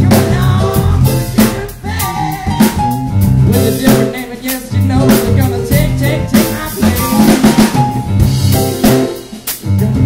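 A live rock band playing, driven by a drum kit with snare and bass drum hitting in a steady beat, over electric bass, guitar and keyboards.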